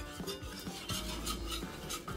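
A wire whisk stirring a butter-and-flour roux in an enamelled pot, making faint, irregular scraping and ticking against the pot as the roux is worked smooth and free of lumps.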